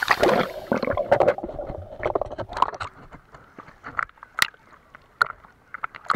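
Sea water sloshing and splashing around a camera at the surface as it dips under and back up, busy for the first second or so, then thinning to scattered drips and bubbly pops with quiet gaps.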